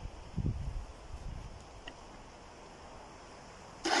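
Quiet background with some low rumble in the first second or so. Just before the end, an electric pressure washer starts suddenly with a loud, steady whine as it drives a snow foam lance spraying foam onto the car.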